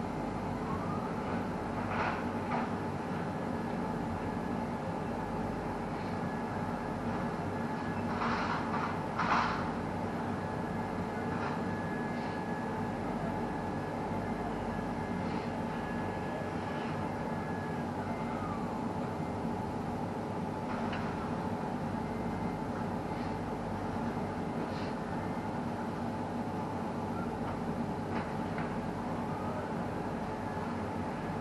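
Steady machinery hum inside a tower crane cab, with a high whine that rises about a second in, holds, and falls away a little past halfway. A few brief knocks sound around eight to ten seconds in.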